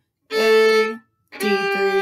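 Violin playing two slow, separate bowed notes, open A then third finger on the D string (G), ending a short practice phrase played at a slow tempo.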